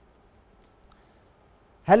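Near silence: quiet studio room tone, with one faint, brief click a little under a second in, just before a man's voice starts near the end.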